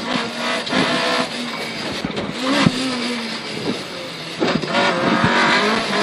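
Rally-prepared rear-wheel-drive Toyota Corolla's engine heard from inside the cabin, its note falling and rising as the car slows, changes down from third to second for a right-hand corner and accelerates again near the end.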